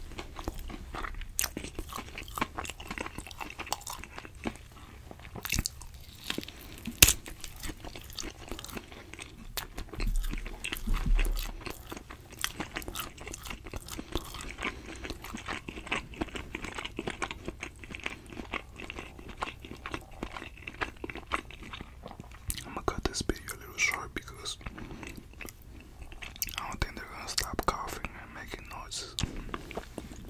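A person chewing and biting meat right up against a microphone: irregular wet mouth clicks and smacks, with a few louder low knocks about ten seconds in.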